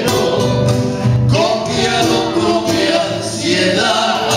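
Three male voices singing a cueca in harmony, accompanied by strummed acoustic guitars, with long held notes and a new sung phrase starting about a second and a half in.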